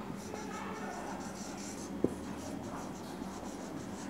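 Marker pen writing on a whiteboard: a run of short scratchy strokes, with a single sharp tap about two seconds in.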